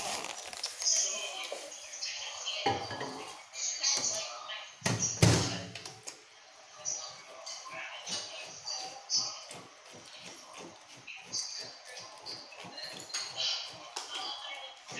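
Close-up eating and table-handling noises: a rapid run of small clicks and crackles, with two heavier thumps about three and five seconds in.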